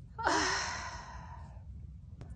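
A woman's long, breathy sigh while crying, opening with a brief catch in the voice and fading away over about a second.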